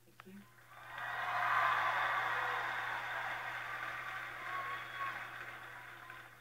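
Studio audience applauding and cheering, swelling about a second in and then slowly dying away.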